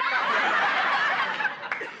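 Sitcom studio audience laughing at a punchline: a burst of crowd laughter that starts at once and dies away after about a second and a half.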